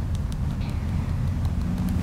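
Low steady rumble with a few faint ticks above it.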